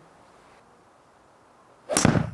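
Golf club striking a ball off a practice mat: one sharp crack near the end after a quiet spell, a clean, centred strike that sounded really nice.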